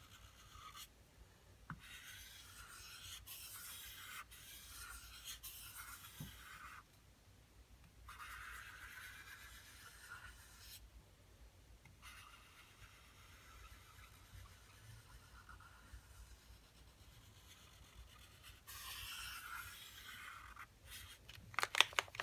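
Posca paint marker's tip rubbing and scrubbing across the surfboard's painted surface in several stretches of a few seconds, blending purple paint out with white. A few sharp clicks near the end.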